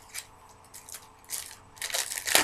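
A few short, soft rustles and clicks of trading cards and pack wrappers being handled between pulls.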